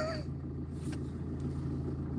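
A steady low rumble of background noise in a pause between spoken sentences, with the falling end of a spoken word just at the start.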